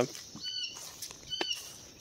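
Two short, faint chirps from backyard wildlife, about half a second and a second and a half in, the second with a soft click.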